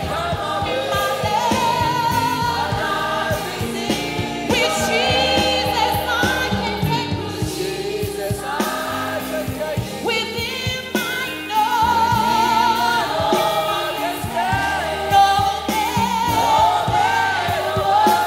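Gospel song sung by a group of voices with a leading voice, over a live band's keyboards and bass.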